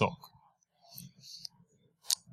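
A man's lecturing voice finishes a word at the start, followed by a pause holding only a few faint, soft sounds.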